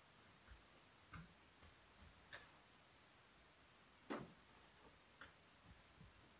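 Near silence: room tone with a few faint, scattered taps and ticks, the clearest about four seconds in.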